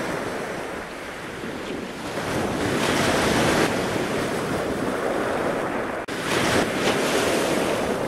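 Wind buffeting the microphone over rushing surf and water spray, swelling a couple of seconds in, with a brief dropout about six seconds in.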